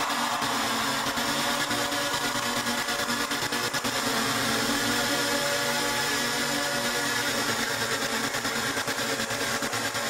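Breakdown of a trance track: sustained synthesizer chords held over a steady hiss, with no bass drum.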